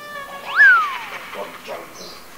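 A single cat meow about half a second in, sharply rising and then falling in pitch, over soft background music.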